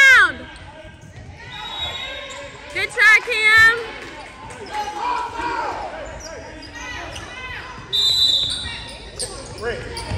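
Youth basketball game on a hardwood gym court: a basketball bouncing, with shouts from players and spectators, the loudest about three seconds in.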